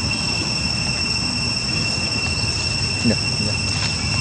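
Steady high-pitched insect drone, a continuous whine at two pitches, over a low background rumble. A brief voice-like sound comes about three seconds in.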